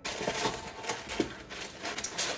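Baking paper rustling and crinkling as it is handled, an irregular run of small crackles.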